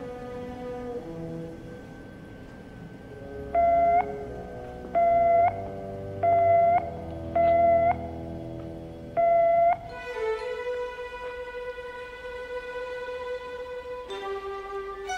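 Orchestral film score led by strings, cut into by five loud electronic beeps, each about half a second long and a little over a second apart, beginning about three and a half seconds in. After the beeps the music moves to higher held notes.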